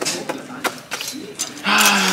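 Clothes hangers clicking and then scraping along a metal clothing rack as they are pushed aside; a few scattered clicks, then a loud scrape starting near the end.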